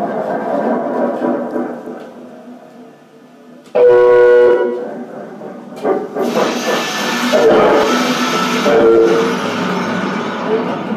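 Free-improvised electroacoustic music from laptop electronics and a bowed, prepared string instrument. A grainy noise texture thins out, then a sudden loud horn-like chord sounds briefly about four seconds in. A dense noisy wash with tones swelling in and out follows.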